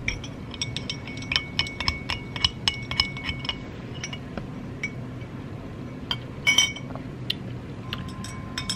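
A plastic straw stirring a drink in a drinking glass, clinking against the glass: rapid clinks with a ringing tone for the first few seconds, then sparser clinks with a short flurry near the end.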